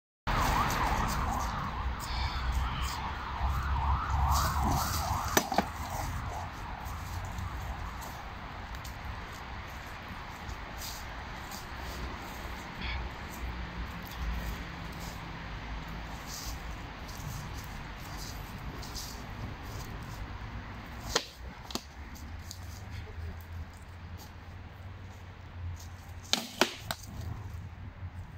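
A few sharp knocks of training weapons striking shields and each other during sparring, two in quick succession about 21 s in and a cluster near the end. A wavering siren is heard over the first five seconds or so.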